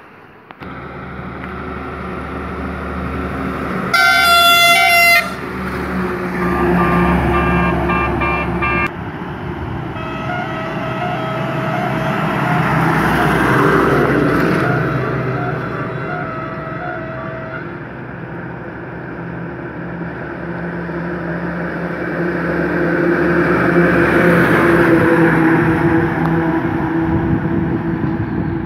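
Trucks passing on a road with their diesel engines running, the noise swelling as one goes by close about fourteen seconds in and again near the end. A loud truck horn blasts for about a second about four seconds in, followed by a horn sounding a quick run of changing notes and then a horn beeping in rapid even pulses for several seconds.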